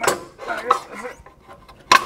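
Metal clanks and clinks as a steel rear coil spring is tugged and worked into its seat on the axle: a sharp clank at the start, lighter clattering, and another sharp clank near the end.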